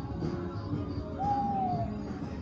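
A single owl hoot sound effect from an animated forest display, one call falling slightly in pitch a little past halfway, over low background music.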